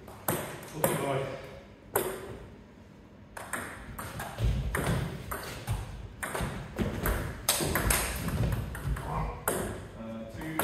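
Celluloid-type table tennis ball clicking off bats and the table. There are a few single strikes at first, then a quick rally of rapid clicks from about three and a half seconds in until near the end. Low thuds of players' feet on a wooden floor run under the rally.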